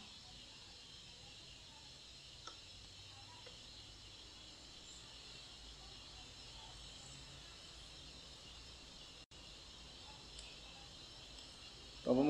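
Near silence: faint, steady room tone and microphone hiss, with one tiny click about two and a half seconds in.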